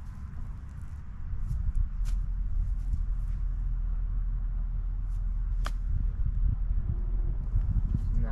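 A golf club striking the ball on a short chip shot: a single sharp click about five and a half seconds in, over a steady low rumble of wind on the microphone.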